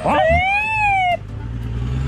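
A long, high-pitched drawn-out shout of "ó" rises and then falls in pitch for about a second. Under it, and plainer once it stops, an off-road SUV's engine runs low and steady as the vehicle drives up a dirt trail.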